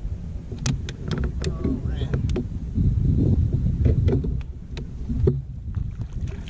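Steady low rumble of wind and water on a kayak-mounted camera, loudest in the middle, with scattered sharp clicks and knocks of rod-and-reel handling during a fight with a hooked redfish.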